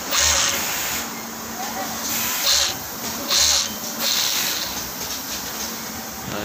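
Industrial overlock sewing machine's servo motor running in short bursts, the handwheel turning in the reverse direction after the control box was set to reverse rotation.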